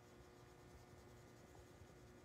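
Faint scratching of a marker colouring on sketchbook paper, over a low steady hum.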